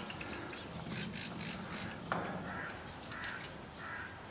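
A bird cawing: three short, similar calls in the second half, over faint knocks and scuffling.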